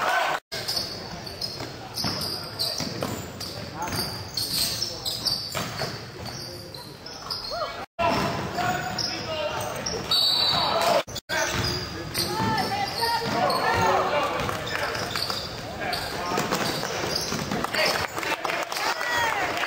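Indoor basketball game: a ball dribbling on a hardwood court amid players' and spectators' voices in a gym hall. The sound drops out sharply and briefly three times, about half a second in, near the middle and a few seconds later, at edit cuts.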